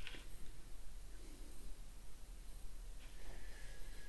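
Quiet room with faint soft rubbing as a small brush works wood stain onto a miniature wooden stair rail; a small click right at the start.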